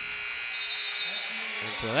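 Arena horn sounding the end of the basketball game, a steady electric buzz that stops shortly before the end.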